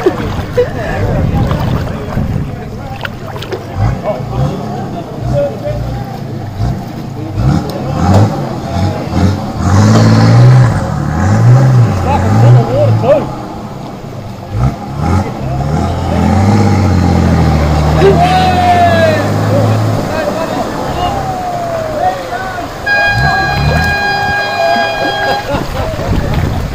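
A crowd chatters and laughs in the open while a vehicle engine works as a flooded ute is dragged out of deep water. Near the end, a car horn sounds one steady note for about three seconds.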